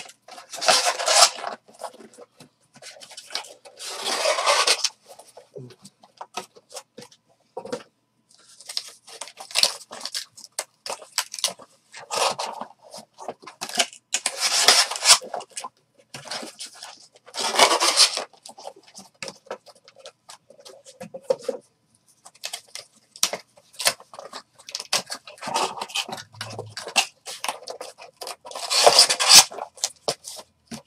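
Cardboard trading-card boxes being handled and folded open by hand: irregular strokes of cardboard scraping and rubbing, some a second long, mixed with short clicks and taps.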